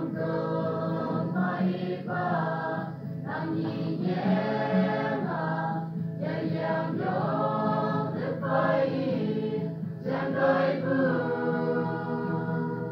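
Church choir of men and women singing together, sung in a local dialect, in phrases that swell and break every second or two.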